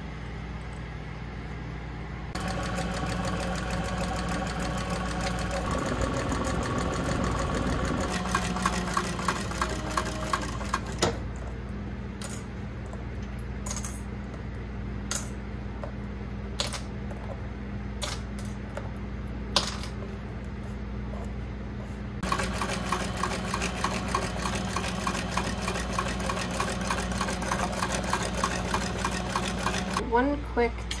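Cylinder-arm sewing machine stitching a leather bag in rapid runs of stitches: one stretch of several seconds, a pause with scattered sharp clicks, then stitching again near the end, over a steady machine hum.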